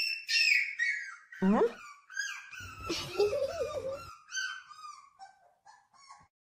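Beagle puppy howling and yelping in a run of high, wavering calls.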